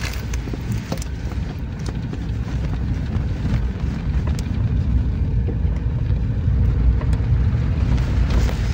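Steady low rumble of a car's engine and tyres heard from inside the cabin while driving on a rough, unpaved road, with a few faint knocks.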